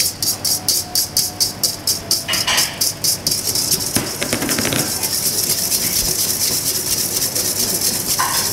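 Wire whisk beating egg yolks in a stainless steel bowl, scraping at about five strokes a second. A little after two seconds there is a short rustle as sugar goes in, and from about three seconds the whisking turns faster and runs together into one continuous scrape.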